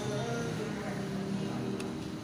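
Faint background voices over steady room noise.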